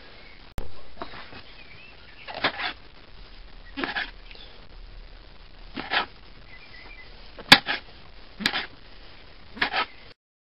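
Kitchen knife quartering button mushrooms on a plastic chopping board: a sharp tap of the blade striking the board roughly every second and a half, about seven cuts in all.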